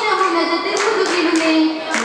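Oppana performance: a group of girls' voices sings a Mappila song over the troupe's rhythmic hand claps, with a run of sharp claps from about a second in.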